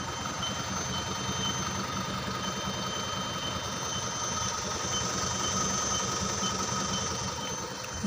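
Tata LPT 1816 truck's diesel engine running steadily at idle, heard close by at the wheel, with a faint high beep repeating about twice a second.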